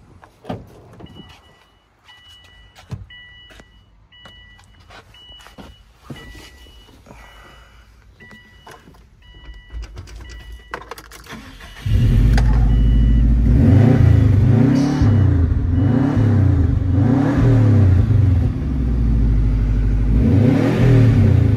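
Clicks and key rattles under a repeating two-tone warning chime, then a 2004 Subaru WRX STI's turbocharged flat-four engine starts about twelve seconds in and is revved several times in short rises and falls.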